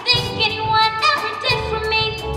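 A female voice singing a musical-theatre song with vibrato over instrumental accompaniment; a low bass note comes in about three quarters of the way through.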